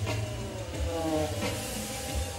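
Live electronic jazz band playing: a steady deep bass groove with drum hits about every 0.7 seconds, and electronic tones gliding downward over it. No trumpet is heard.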